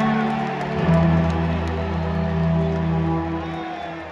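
Live concert music over an arena sound system: sustained synthesizer chords over a deep bass, with no vocals. The chord shifts about a second in, and the music thins and fades near the end.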